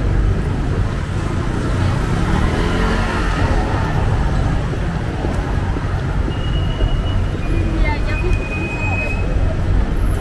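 Busy city street at night: steady road-traffic rumble from passing cars and buses, with passersby's voices mixed in. A couple of short, thin high-pitched tones sound about seven to eight seconds in.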